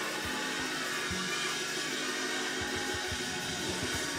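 Live church band music: held organ chords with scattered low kick-drum hits.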